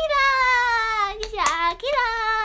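A young woman's voice singing long, wordless held notes. The first note slowly falls in pitch and breaks off after about a second. A short glide and a single sharp click follow, then a second held note starts near the end.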